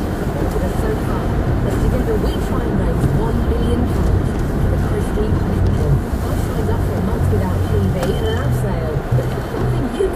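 Steady engine and tyre noise inside a car's cabin while driving on a slushy, snow-covered road, with a radio presenter talking indistinctly underneath.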